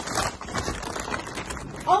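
Paper bag rustling and crinkling as it is handled and opened, with a brief exclamation at the very end.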